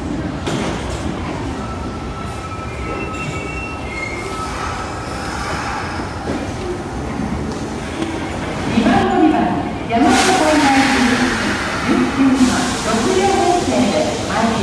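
Kintetsu train pulling slowly into an underground station platform. Its wheels rumble on the rails, with a thin squeal in the first few seconds, then a loud hiss from about ten seconds in that lasts a couple of seconds.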